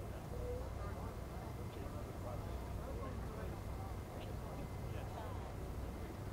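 Faint, indistinct chatter of several voices over a steady low rumble of wind on the microphone.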